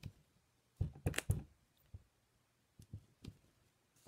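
Short, quiet taps and knocks of rubber stamps being pressed onto card stock on a tabletop: a single tap at the start, a quick cluster about a second in, then a few more near the end.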